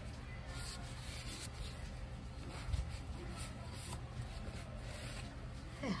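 Paper towel rubbing and wiping against the plastic inside the brush-roll chamber of a Bissell CrossWave floor cleaner's head, faint light strokes as the dirt is wiped out.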